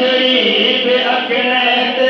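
A man reciting a Sindhi naat into a microphone, unaccompanied, in long held notes that waver slowly in pitch.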